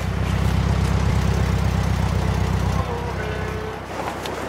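An old Volkswagen Passat's engine running with a steady low rumble, which drops in level about three-quarters of the way through.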